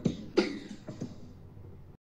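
Background music with a steady beat of about two strokes a second, fading out over the second half.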